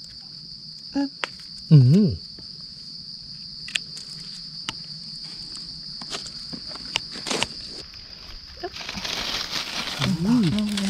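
Steady high-pitched insect chorus buzzing in the forest, with scattered small clicks and crackles of leaf litter and handling. Near the end, dry grass and leaves rustle as someone pushes into them.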